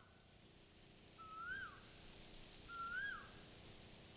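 A bird calling twice, about a second and a half apart. Each call is a short, faint whistle that rises and then drops.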